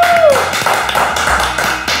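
Hands drumming rapidly on a tabletop in a mock drumroll over music, after a short sung 'ta-da' at the start; a brief laugh near the end.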